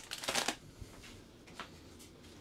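A short rustle and clatter in the first half second as a small plastic sample spool of 3D-printer filament is set down among cardboard and plastic packaging, then quiet room tone with one faint click a little past halfway.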